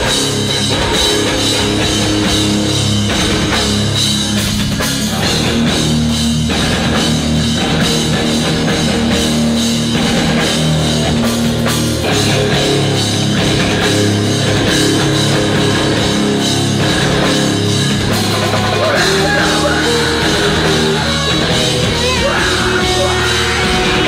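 Live rock band playing loud and without a break: electric guitars, bass guitar and drum kit.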